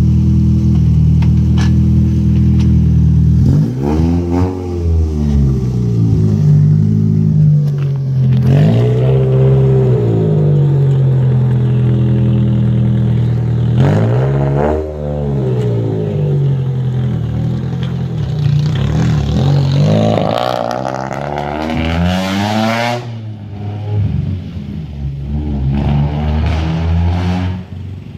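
Nissan Gazelle S12's four-cylinder engine through a large aftermarket exhaust, idling and then revved in several rising-and-falling blips, with a longer, higher run near the end as the car pulls away and the sound fades.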